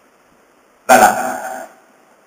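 A man's voice: one short utterance about a second in, after a pause with almost nothing to hear.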